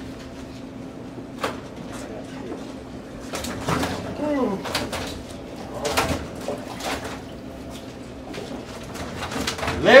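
A bird cooing over faint background voices, with a few short knocks.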